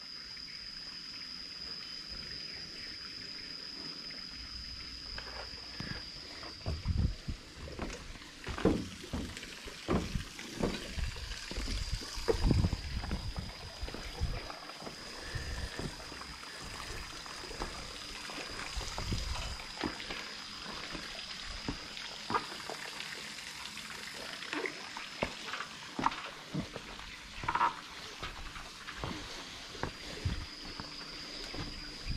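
Footsteps on a rusty steel footbridge: irregular low thumps and knocks of the plank deck under someone walking across, starting about six seconds in and loudest near the middle. A steady high whine runs underneath, breaking off for a few seconds early on.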